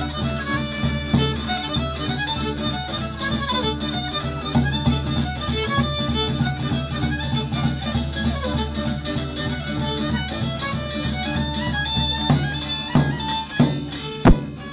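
Live Romanian folk band music: a fiddle plays a lively dance tune over a steady rhythmic accompaniment.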